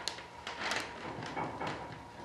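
Clear plastic vacuum-bag film crinkling in several short crackles as it is pressed and worked into the corner of a composite wing mold.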